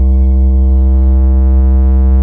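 Loud, steady electronic bass drone from a DJ remix intro: one deep sustained tone with fainter overtones above it, held without change.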